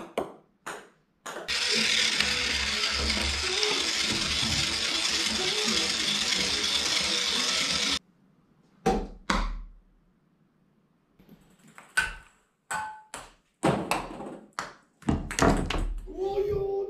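Sharp knocks and clicks of objects hitting things, several leaving a short ringing ping. They are broken by a loud, steady noise that runs for about six seconds and cuts off suddenly.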